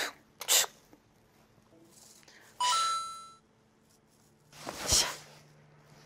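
A single bright electronic chime, a 'ding' with a ringing tail, about two and a half seconds in. Two short sharp noises, one just after the start and one about a second before the end.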